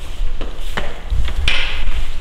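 Camera handling noise: a few soft knocks, then a louder rubbing scrape of fabric against the microphone about one and a half seconds in.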